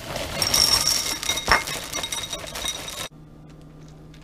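Dry ring cereal poured from the box into a ceramic bowl: a dense rattling clatter with the bowl ringing, which cuts off abruptly about three seconds in.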